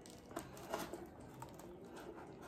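Faint clicks and scrapes of scissors cutting the packing tape on a cardboard box, a few soft, irregular snips.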